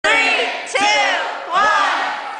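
A group of high voices shouting in unison three times in a row, each loud shout about three-quarters of a second after the last and trailing off, echoing in a large hall.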